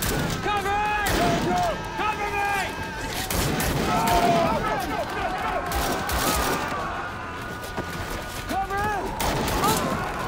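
Rifle gunfire in a firefight: many shots in rapid, irregular volleys, going on without a break, with men shouting over it.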